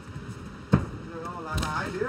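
A single sharp smack of a front kick landing in a Muay Thai exchange, about a third of the way in, then a duller thud. A man's voice follows.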